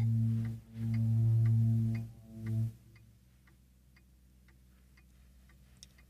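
Film-clip soundtrack: three low held musical notes over the first three seconds, with faint, regular ticking at about two to three ticks a second that carries on alone, very quietly, after the notes stop.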